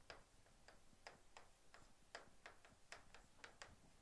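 Chalk tapping on a chalkboard as a word is written: faint, irregular light clicks, about four a second.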